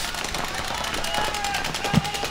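Paintball markers firing in rapid streams: a fast, dense run of sharp pops from several guns across the field.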